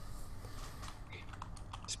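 Faint, irregular clicks of typing on a computer keyboard, heard over a steady low hum on a video call.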